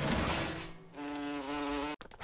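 Cartoon sound effect of a housefly buzzing: a steady, even-pitched buzz through the second half that cuts off sharply, after a rushing noise in the first second.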